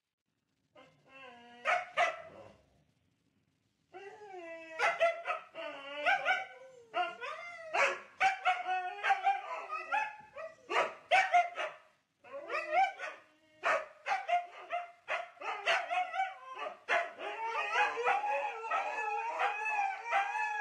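Two huskies barking and howling at each other: short barks among wavering, pitch-bending calls that run almost without a break from about four seconds in, ending in two long howls that overlap.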